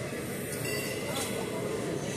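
Steady airport ramp noise: a low, even jet-engine rumble with a thin, steady high whine running through it, and faint voices underneath.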